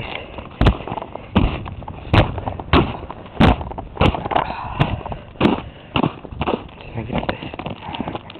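Footsteps crunching through ice-crusted snow, a sharp crunch with each stride at about one and a half steps a second.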